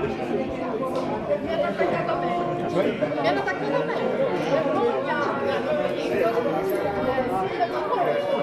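A small group of people talking over one another: overlapping, animated chatter at a steady level.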